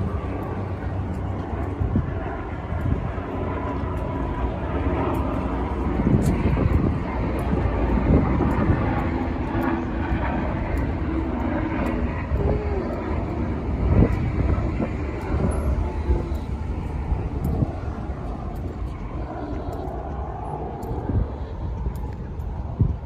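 Steady low engine rumble of passing traffic, with a few short knocks now and then.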